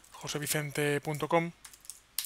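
Keystrokes on a computer keyboard as an email address is typed, under a man's voice that is louder for the first second and a half.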